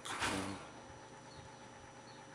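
A man's short breathy exhale with some voice in it, a frustrated sigh, in the first half-second, then only a faint steady hum in the room.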